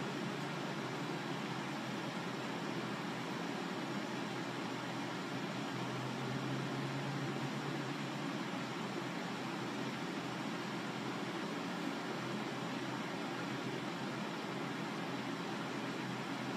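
Steady, even hiss of room noise with a faint low hum under it, and no distinct events.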